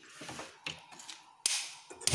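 Gas stove burner being lit with a hand-held spark gas lighter: a soft hiss of gas, then three sharp clicks of the lighter's spark in the second half.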